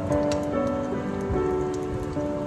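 Pork-cartilage sausages sizzling in hot oil in a frying pan, a steady crackle with scattered small pops, under background music.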